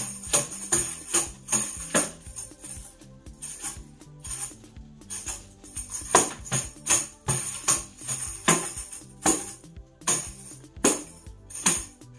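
Handheld tambourine struck again and again through a dance pattern: sharp taps, some in quick pairs, each with its metal jingles ringing, over background music.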